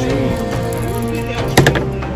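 Background music, with a die clattering onto a plastic-covered table in a few quick knocks about one and a half seconds in.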